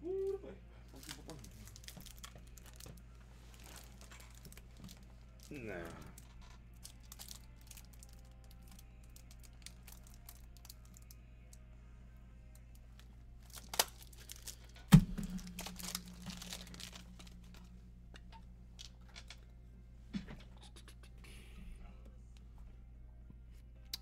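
Trading-card packs and cards being handled: foil wrappers crinkling and tearing, with scattered small clicks and crackles. A single loud knock comes about fifteen seconds in.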